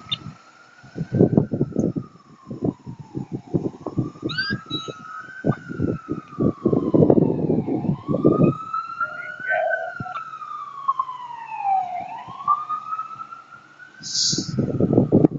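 An emergency vehicle's siren on a slow wail, rising and falling about every four seconds. Through the first two-thirds, loud irregular low thumps and rumble sit under it.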